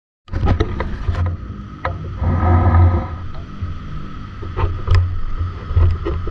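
Handling noise on a close camera microphone: uneven low rumble and rustling with sharp clicks and knocks, as fishing line and a wire rig are handled among tall grass.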